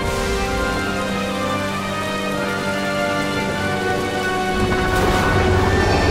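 Film soundtrack of steady rain under a sustained, held-note music score, with a deeper rumbling swell coming in about five seconds in.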